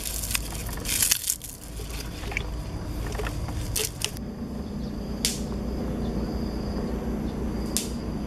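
Wet squishing and crackling as leafy greens are crushed and stuffed by hand into a clay pot of water and raw tripe. After about four seconds the handling gives way to a steady background with a faint high whine, broken by two sharp clicks.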